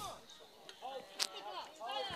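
Faint calls and shouts of field hockey players across the pitch, with one sharp click of a hockey stick striking the ball a little over a second in.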